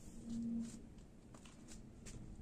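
Faint footsteps on patio paving, a few light steps, with a brief low hum of about half a second near the start.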